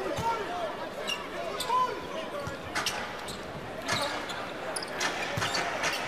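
A basketball being dribbled on a hardwood court, sharp bounces at irregular intervals, over the faint murmur of the arena crowd and faint voices.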